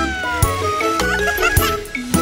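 Bouncy children's-song backing music with a steady beat, over which a cartoon baby's voice gives a short exclamation of surprise that glides up and then falls away in the first half second.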